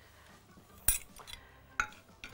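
Two sharp clinks of a metal ladle knocking against a cooking pot, about a second apart, as melted ghee is scooped out.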